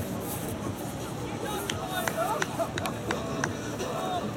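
Distant shouts and calls of soccer players over a steady outdoor hiss, with a few sharp clicks in the second half.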